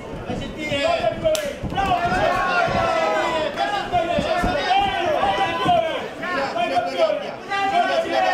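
Several voices shouting over one another around a cage fight, cageside urging from corners and crowd, with one sharp smack about a second and a half in.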